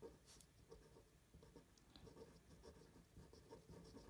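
Faint scratching of a fine-tip pen on paper, in short irregular strokes as it writes lettering.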